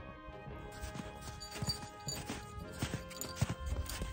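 Background music with sustained tones, joined from about a second in by hikers' footsteps, irregular hollow knocks that grow louder and more frequent toward the end.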